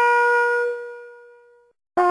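A brass horn holds one long note that fades away to silence about three-quarters of the way through, and the next phrase starts sharply at the very end.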